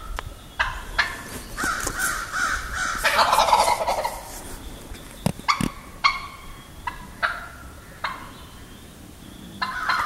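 Wild turkey toms gobbling again and again, short rattling gobbles with several overlapping into a longer, louder run about three seconds in. Two sharp knocks sound near the middle.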